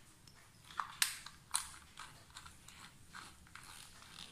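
Tester screwdriver working the terminal screw of a residual-current circuit breaker while a wire is refitted: a few sharp clicks and scrapes of metal on plastic and metal, the loudest about a second in, then fainter ticks.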